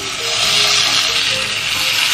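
Raw pork belly slices sizzling as they are laid into a hot nonstick frying pan. The sizzle swells in the first half second and then holds steady, with faint background music underneath.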